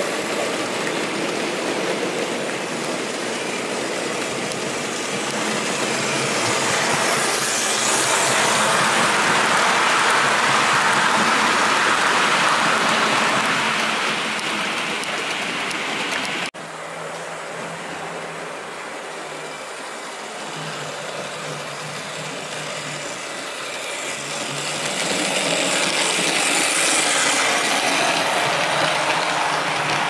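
OO gauge model goods train of old Triang and Hornby wagons rolling along the track, its wheel-on-rail running noise swelling to a peak and then easing. After an abrupt cut, another model train is heard running with a faint hum, growing louder near the end as it approaches.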